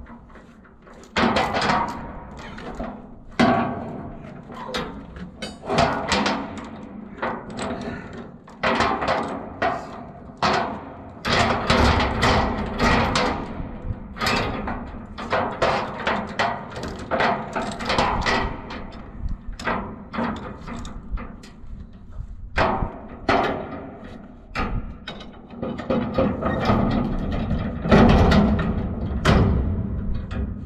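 Steel load chain clanking and rattling against a steel shipping container as it is pulled tight and hooked, with many irregular sharp metallic knocks, while a lever chain binder is worked.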